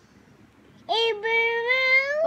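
A young child's high-pitched sing-song voice, starting about a second in with one long drawn-out note that rises slowly in pitch.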